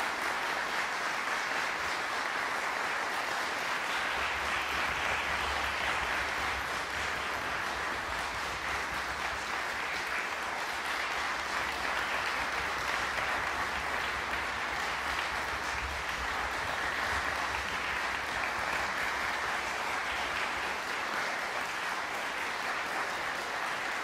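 Concert-hall audience applauding, a steady, unbroken clapping.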